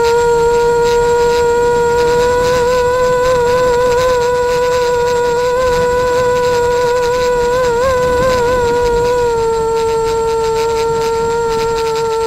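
Drone's motors and propellers humming at a steady pitch, wavering briefly about eight seconds in.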